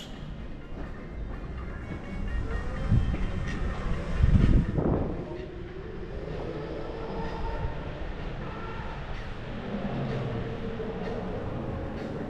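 Electric scooter rolling through a tiled underground passage: a steady tyre and motor rumble, with a louder low surge about four to five seconds in.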